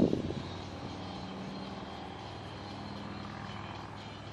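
A steady engine drone with an even low hum that holds level throughout.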